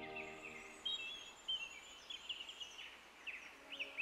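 Small songbirds chirping, a quick run of short high calls repeating, faint against the open air. Soft music fades back in near the end.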